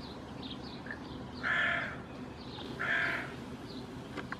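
A bird calls twice, each call loud and about half a second long, the two about a second and a half apart. Faint high chirps of smaller birds sound in between.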